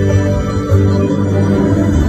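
Instrumental passage of a live band with a symphony orchestra, playing sustained, held chords without singing.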